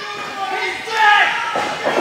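Wrestling crowd shouting and cheering in a large hall, many voices overlapping.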